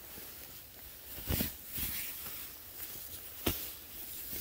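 Soft rustling of hammock fabric and clothing as a person climbs into a hammock, with three brief knocks about a second, two seconds and three and a half seconds in.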